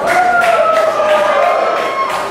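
Music playing loud through a club PA system: one long held note that slowly sinks in pitch, with a few short percussive hits.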